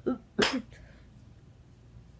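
A person sneezing once, sharply, about half a second in, just after a smaller breathy burst.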